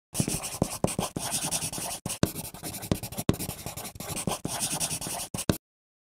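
Graphite pencil scratching across Bristol board paper in quick, repeated strokes, with sharp ticks where the point strikes the paper. It cuts off suddenly near the end.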